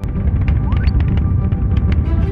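A deep rocket-launch rumble that starts abruptly and loud, laid over music.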